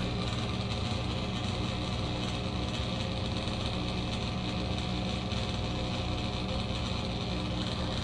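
Old Broan bathroom exhaust fan running steadily and loudly: an even motor hum made of several steady tones over a rush of air.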